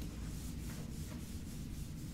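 Whiteboard eraser rubbing across a whiteboard in short strokes, over a steady low room hum.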